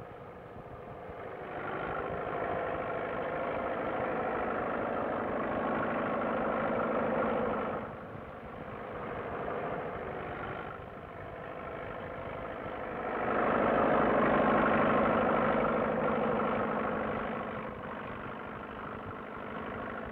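Engines of road-building machinery, a crawler bulldozer and a dump truck, running under load. The sound builds about a second and a half in, drops off at about eight seconds, swells louder again from about thirteen seconds, and eases near the end.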